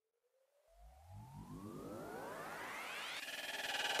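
Synthesizer riser: several tones glide steadily upward in pitch and grow louder over about three seconds, with a low rumble joining about a second in. It breaks into a fast pulsing near the end.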